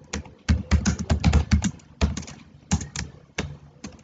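Typing on a computer keyboard while writing C code: a quick run of keystrokes about half a second in, then a few separate key presses.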